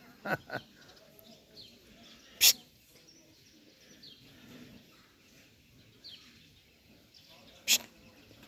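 Faint bird chirps over quiet outdoor ambience, broken by a few short, sharp bursts of noise: two close together just after the start, the loudest about two and a half seconds in, and another near the end.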